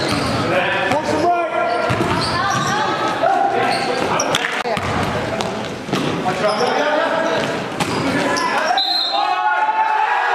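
A basketball bouncing on a gym floor amid the voices of players and spectators.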